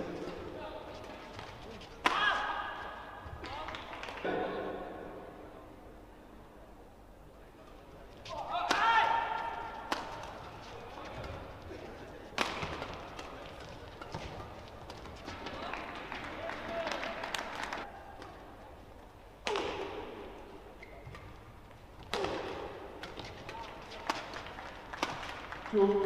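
Badminton doubles rallies: sharp, irregularly spaced racket strikes on the shuttlecock and footwork thuds, with shoes squeaking on the court and voices now and then.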